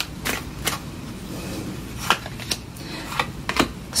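Tarot cards handled and drawn from the deck, making about half a dozen sharp, irregularly spaced snaps and taps as cards are pulled and laid down on the table.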